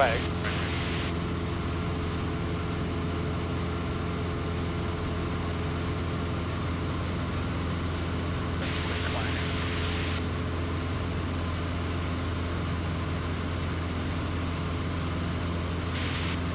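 Super Decathlon's four-cylinder Lycoming engine and propeller running steadily at cruise, heard from inside the cockpit as an even, low drone. A brief hiss about nine seconds in.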